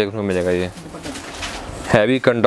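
A man's voice drawn out in one held, wordless hum for under a second, followed by a quieter lull before talk resumes.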